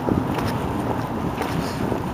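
Wind buffeting the microphone of a handheld camera, a steady low rumble over the noise of a city street.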